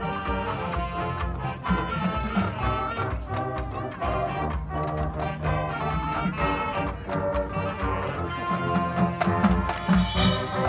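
Marching band playing live: brass holding sustained chords over marching percussion.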